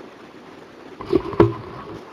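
Low steady hiss of a video-conference audio line. About a second in comes a short burst of sound, then a sharp knock or click.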